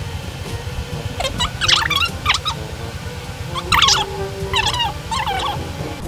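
Hard-boiled eggshell crackling and snapping off in small pieces as it is peeled by hand, in two short bursts of crackling, the first about a second and a half in and the second near four seconds. The shell is hard to peel, coming away in fragments.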